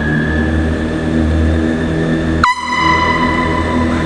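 Handheld canned air horn blown in one loud, held blast starting about two and a half seconds in, over the steady low running of a 2003 Kawasaki ZX-6R 636's inline-four engine inside a concrete parking structure.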